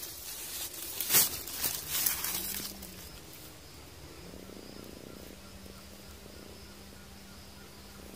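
Rustling and scraping noises as a gloved hand handles a stone among grass, loudest about a second in and dying away after about three seconds. A faint steady hum follows.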